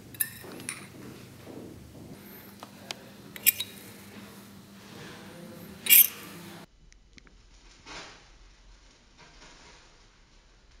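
A metal spatula scrapes and clinks against a small ceramic dish while magnesium shavings and potassium permanganate are mixed in it. Sharp clinks come about three and a half seconds in, and the loudest comes about six seconds in. The sound then drops away to a quiet room with one soft rush near the end.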